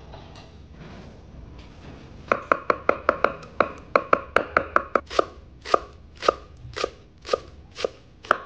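Kitchen knife chopping on a wooden cutting board, mincing garlic and shallots. The strokes start about two seconds in, quick at about five a second, then slow to about two a second.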